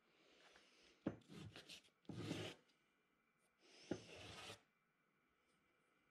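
A small wooden block rubbed by hand against a sheet of sandpaper: four short scraping strokes, two of them starting with a light knock as the block meets the paper, sanding and bevelling its edges.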